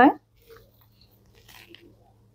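A woman's voice saying the last of a short "bye" right at the start, then near quiet broken by a few faint soft clicks about half a second in and again near the end.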